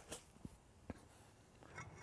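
Near silence with three faint, short clicks in the first second.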